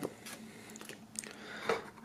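Faint handling noise of hands setting down stickers and reaching into a cardboard box, with a few soft clicks about a second in and near the end.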